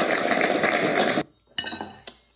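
A small group applauding, a dense patter of clapping that cuts off abruptly a little past one second in.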